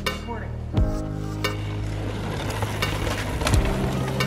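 Background music with sustained low notes, over a steady gritty hiss of mountain bike tyres rolling and skidding on a loose dirt trail from about a second in.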